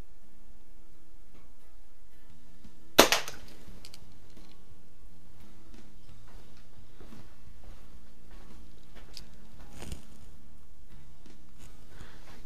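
A Daisy Model 177 BB pistol fires a single shot, a sharp snap about three seconds in.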